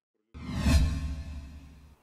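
Transition whoosh sound effect with a deep low boom. It starts suddenly about a third of a second in and fades away over about a second and a half.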